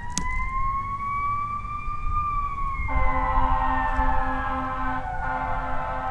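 Ambulance siren wailing in a slow rise and fall of pitch as it approaches. About three seconds in, a second steady droning tone with a pulsing low note joins it, over a low rumble.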